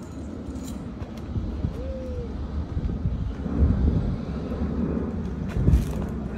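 Outdoor background rumble, uneven and low-pitched, with one short tone that slides slightly downward about two seconds in.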